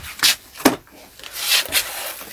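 Cardboard product boxes being handled: a few short knocks in the first second, then a longer scraping, rubbing noise of boxes sliding against each other or against hands.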